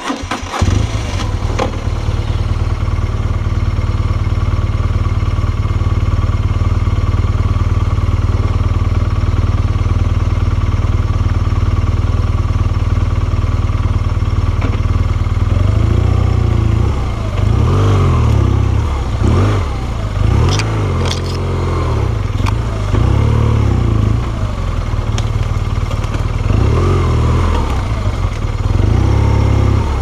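BMW R1200GS air-cooled boxer twin starting up right at the start and settling into a steady idle. From about halfway on, the engine speed rises and falls over and over as the throttle is opened and closed.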